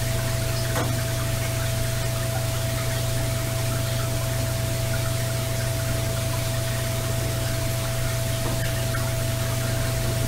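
Digitally boosted background noise of a Sony ICD-PX370 voice recorder: a steady hiss with a low electrical hum and a thin steady tone above it, and no voice in it.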